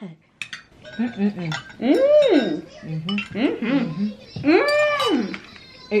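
A woman's drawn-out "mmm" tasting hums while eating noodles, two long ones rising and falling in pitch and a few short low ones, with light clicks of chopsticks against the bowl.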